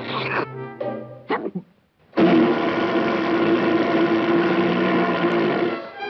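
Orchestral cartoon score: a few short phrases, a brief near-silent pause about two seconds in, then a loud held note with a buzzy edge for about three and a half seconds that stops just before the end.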